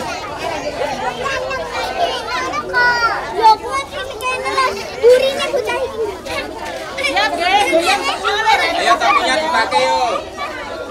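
A crowd of young children chattering and calling out all at once, many high voices overlapping.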